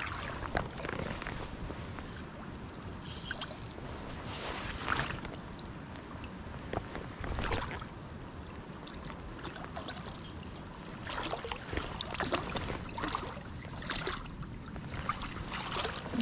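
Steady wash of moving creek water and wind on the microphone, with scattered splashes and knocks as a hooked trout is played in to the landing net; they come more often in the last few seconds.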